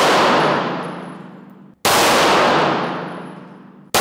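Pistol shots fired through a car windshield with Sellier & Bellot 147-grain subsonic flat-nose 9mm rounds: two shots about two seconds apart, each with a long echoing decay in a large indoor hall, and the tail of the previous shot at the start.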